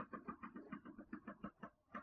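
Rapid, light taps of a digital pen on a drawing surface as dots are marked one after another, about seven taps a second, stopping shortly before the end.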